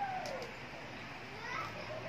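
Faint, distant voice-like calls: one falling call at the start and a faint rising one near the end, over a low steady background.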